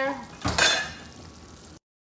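Metal clatter of a cookie sheet going back into the oven onto its rack: one loud clank about half a second in, ringing briefly and fading. The sound cuts off abruptly near the end.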